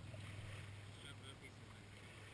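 Faint low hum of a distant motorboat engine out on the lake, slowly fading, with a couple of faint, short, high duckling peeps about a second in.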